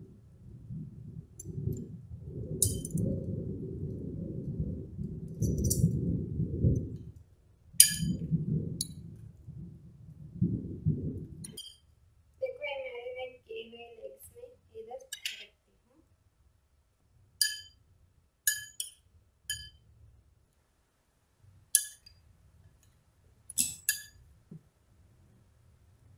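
Metal tongs and a spoon clinking against a glass mixing bowl while raw chicken drumsticks are turned in a thick, wet marinade. For the first half a dull, low rustle of the chicken worked through the paste runs under the clinks. Then come separate sharp clinks every second or two.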